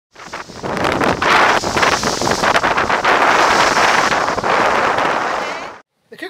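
Loud wind buffeting the microphone, a dense rushing noise with many crackling gusts, fading out near the end.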